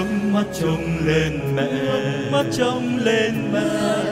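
Music: a Vietnamese Catholic hymn to Mary, with chant-like singing over instrumental accompaniment; a low sustained note of the previous passage ends just as it begins.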